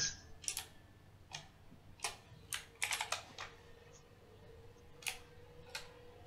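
Computer keyboard typing: scattered keystrokes, single and in short quick runs, at irregular intervals as a document is edited.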